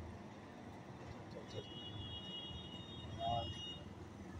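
Passenger train hauled by a WAP-5 electric locomotive running past at a distance, a steady low rumble. A steady high whine joins it about one and a half seconds in, and a short pitched sound stands out near the end.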